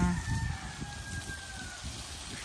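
Water spraying from a garden hose onto soil, a steady hiss, with a distant bird calling once: one long, thin note that falls slightly in pitch.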